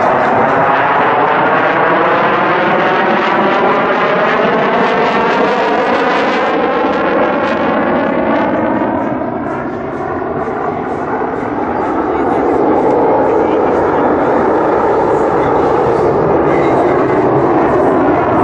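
CF-188 Hornet fighter jet's twin General Electric F404 turbofans running in afterburner, a loud continuous roar as the jet manoeuvres overhead. A phasing sweep rises through the first half, then the roar dips briefly about ten seconds in and swells again.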